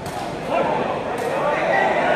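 Indistinct people's voices.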